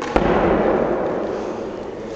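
A medicine ball dropped onto the gym floor: one loud, sharp thud, then a wash of echo that dies away over about a second and a half in a large hall.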